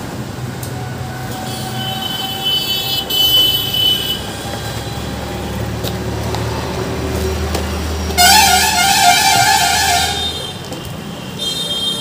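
Motor vehicle traffic: a low engine rumble with horns honking. A high-pitched horn sounds for about two seconds early on, and a louder horn blast of about two seconds comes near the end while the engine rumble swells and then stops.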